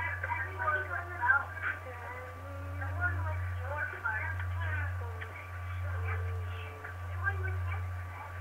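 Indistinct talking in the background that never becomes clear words, over a steady low hum and a thin, steady high whine.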